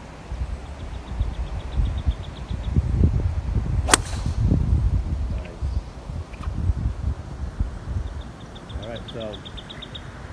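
A golf iron striking a ball once, a single sharp click about four seconds in, over low wind rumble on the microphone.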